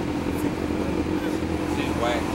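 Steady low rumble of city street traffic, with faint voices in the background.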